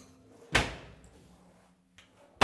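A wooden kitchen cabinet door banged shut once, about half a second in: a sharp knock that dies away quickly.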